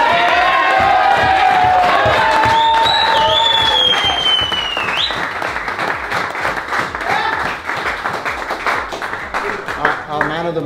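A small group of men cheering and clapping: long drawn-out shouts and a high whistle over hand-clapping, then after about five seconds the shouts die away and the clapping carries on.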